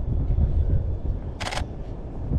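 Low wind rumble and handling noise on a body-worn camera's microphone as the wearer walks, with a short scratchy rustle about a second and a half in.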